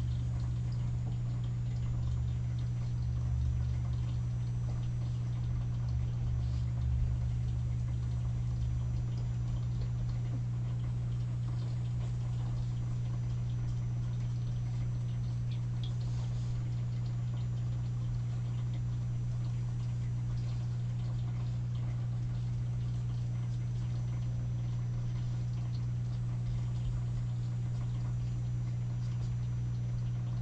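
A steady low hum, with faint scratching of an alcohol marker's felt tip over paper as a rose is coloured and blended.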